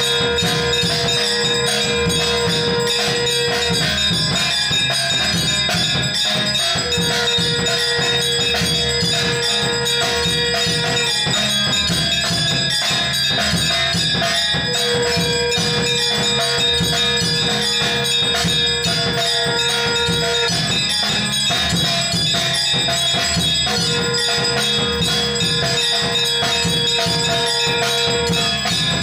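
Aarti music with bells ringing throughout, and a long held note of several seconds that returns about every eight seconds.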